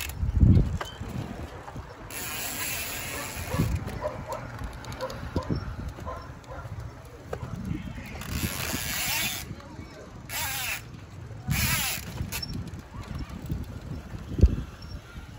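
A bicycle ridden in wheelies on asphalt, with dull thumps as the wheels come down, the loudest about half a second in, and several bursts of rushing tyre or wind noise.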